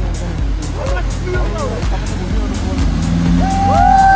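Background music with a steady beat, about two beats a second, over a four-wheel drive's engine and spray as it drives through a river ford. People whoop and shout with long, falling calls from about three and a half seconds in.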